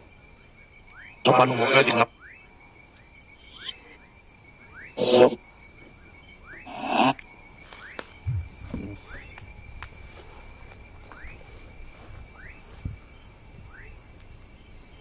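Night-time outdoor chorus of a steady high insect trill and a short rising chirp repeating roughly once a second. It is broken by three brief louder bursts of garbled voice-like radio fragments from a handheld spirit box, about a second in, near five seconds and near seven seconds.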